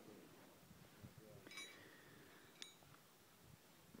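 Near silence, broken by two faint, short metallic clinks about a second apart.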